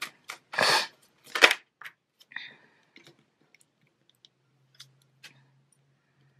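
Oracle cards being handled by hand: several sharp rustles and slaps of card stock in the first two and a half seconds, then a few faint taps as a card is laid on the spread. A faint low hum comes in about four seconds in.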